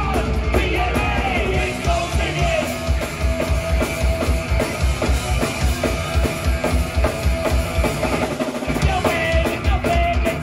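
Punk band playing live: electric guitars and bass over a fast, steady drum beat, with shouted vocals over the first few seconds and again near the end.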